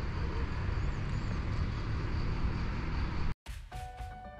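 Steady outdoor background noise, mostly a low rumble with a faint high hum over it, cutting off suddenly a little over three seconds in; background music starts just after.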